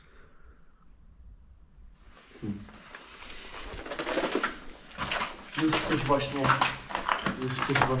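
Footsteps crunching and scraping over rubble and broken plaster on a concrete floor, starting a few seconds in after a near-silent pause, with a man's voice talking over them in the second half.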